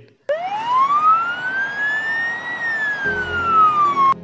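Ambulance siren sounding its wail tone: one slow sweep up in pitch over about two seconds, then a slower glide back down, cut off suddenly at the end.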